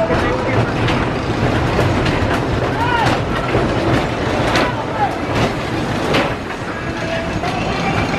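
Wooden roller coaster train rumbling and clattering along its track, with rapid clicks and knocks from the wheels on the rails. People's voices can be heard as well.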